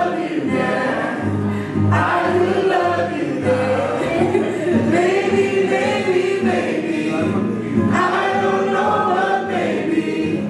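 A woman singing a slow melody in long, sliding lines, accompanied by a strummed nylon-string classical guitar.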